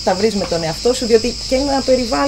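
A steady, high-pitched chorus of insects such as crickets, unbroken throughout, under a woman talking.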